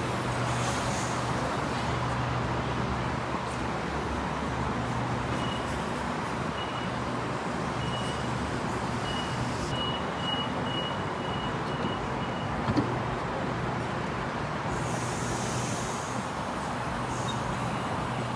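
Sydney Trains Waratah A-set electric train standing at the platform, its equipment humming steadily. A string of high door-warning beeps starts about five seconds in and comes faster, then a single knock near the middle as the doors shut. About fifteen seconds in comes a short hiss of air as the train gets ready to move off.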